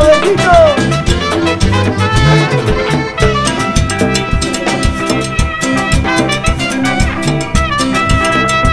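Trumpet solo over a live cumbia band: the trumpet plays held notes with a bent, falling slide a little under a second in, over bass guitar, drum kit and congas keeping a steady beat.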